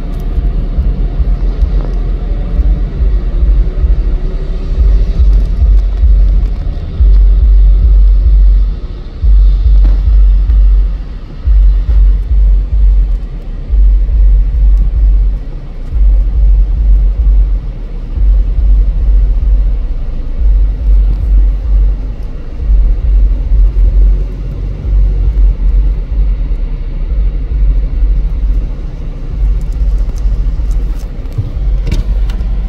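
A car driving on the freeway, heard from inside: steady road noise with a loud low rumble that swells and drops out every second or two.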